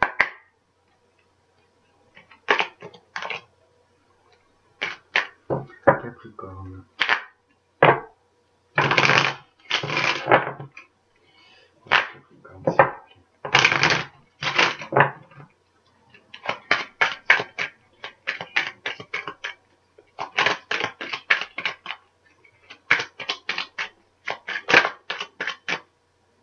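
A deck of tarot cards being shuffled by hand: separate bursts of cards rasping against each other, then quicker runs of rapid clicks in the second half.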